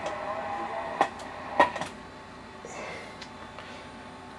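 Two sharp clicks about half a second apart, a second or so in, over faint background noise: a CB radio microphone being handled and its push-to-talk key pressed to key the transmitter.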